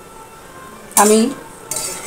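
A spatula stirring chicken and potato curry, just thinned with water, in a metal pot, with light scraping against the pot near the end. A short vocal sound comes about a second in.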